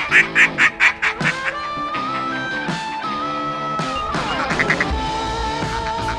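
Background music, over which comes a quick run of about six loud duck quacks at the start and a shorter run of quacks about four seconds in.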